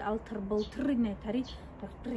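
A woman talking, in a steady run of speech.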